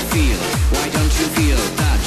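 Electronic dance music with a steady kick drum on every beat, about two beats a second, under a synth line, without vocals.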